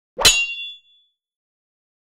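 A single metallic clang about a quarter second in, with a short high ringing that dies away within a second.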